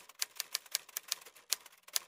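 Typewriter keystrokes as a sound effect, a quick run of sharp clicks, about five a second, one for each letter as a caption types itself out.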